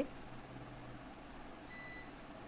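Quiet kitchen room tone with a faint steady background hum; near the end a short, faint, high-pitched electronic beep.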